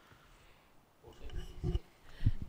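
Room hush, then about a second in a man clears his throat with short, rough bursts close to a desk microphone.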